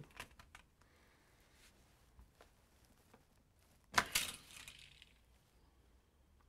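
Light plastic clicks from a hand working a Hot Wheels toy car launcher and track, then one sharp plastic click with a short rattling tail about four seconds in.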